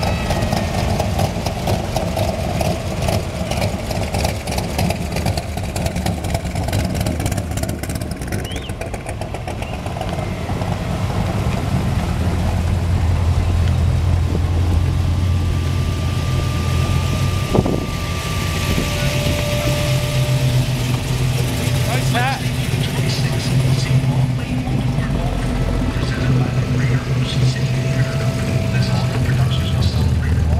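Classic car engines idling and running at low speed as the cars roll slowly past one after another, a low steady engine note that gets louder about halfway through, with crowd voices over it.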